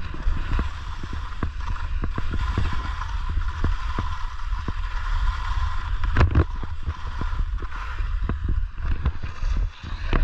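Skis scraping and chattering over crunchy, crusty snow on a downhill run, with many sharp clicks and knocks and one louder knock about six seconds in. A steady rumble of wind buffets the camera microphone.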